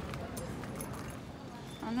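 Big-box store ambience: a steady background noise with scattered, irregular light taps and knocks from walking with a handheld phone. A woman's voice starts right at the end.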